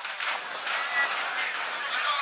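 Indistinct voices in the background, with no clear words.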